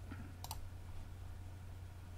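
A single computer mouse click about half a second in, over a faint steady low hum.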